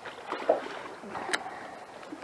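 Small waves lapping, with a brief thump about half a second in and a single sharp click a little later from handling the baitcasting rod and reel.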